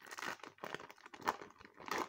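Foil Pokémon card booster pack crinkling in the hands as it is opened and handled, a quick run of irregular crackles.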